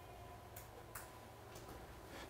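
Near silence: room tone with a low steady hum and two faint clicks, about half a second and one second in.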